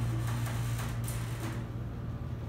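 Schindler 330A hydraulic elevator's pump motor running with a steady low hum as the car starts moving, with a knock about a second in: a rough, jerky start.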